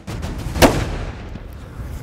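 A single rifle shot about half a second in, followed by a trailing echo that fades over about a second.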